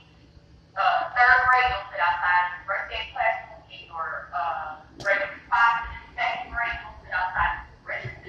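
A person's voice talking almost without pause, after a brief quiet moment at the start; the words are not made out.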